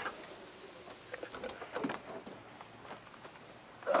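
Faint rustling and a few light knocks and bumps as a person climbs into a race car's bucket seat.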